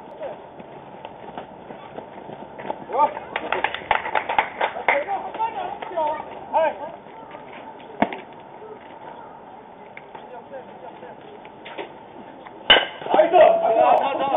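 Players shouting and calling across a baseball field. Near the end comes a sharp crack of a bat hitting the ball, followed by louder shouting.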